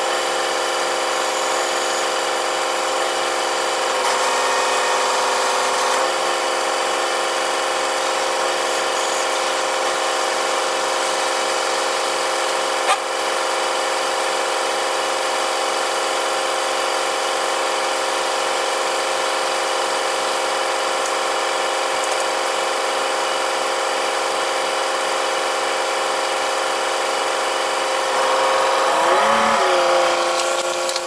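Pickup truck engine idling steadily. There is a brief louder whir about four seconds in, a single sharp click near the middle, and a louder, wavering change in pitch near the end.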